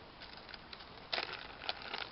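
Plastic packaging of soft-plastic swimbait trailers crinkling and crackling as one is pulled out, with a louder burst of crackles about a second in.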